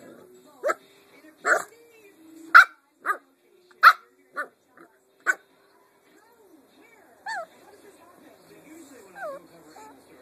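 A puppy gives about seven short, sharp barks in quick succession, barking at her own reflection in a mirror. Near the end come two brief high whines.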